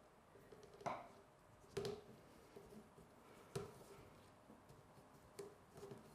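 Near silence with about four faint, short ticks and rustles spread a second or two apart. These are the small handling sounds of hand-stitching through calico wrapped on a wooden embroidery ring frame, as the needle and buttonhole thread are pushed and pulled through the fabric.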